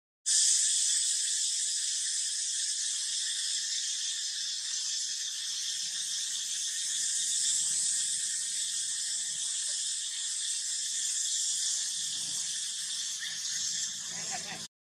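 Steady, high-pitched buzzing drone of a chorus of insects, unbroken throughout.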